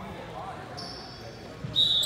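Basketball game play on a hardwood gym floor: a ball dribbling and sneakers squeaking, with a loud, sharp shoe squeak near the end.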